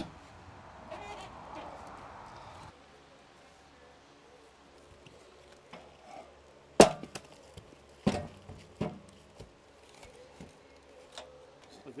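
A red cedar log and wooden blocks being shifted and propped up on a sawmill bed: a sharp wooden knock about seven seconds in, then a few lighter knocks.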